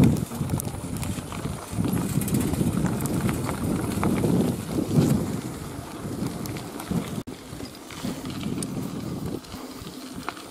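Mountain bike rolling over a dirt and gravel track: tyres crunching and the bike rattling over the bumps, with a low rumble of wind on the microphone. The sound breaks off for an instant about seven seconds in.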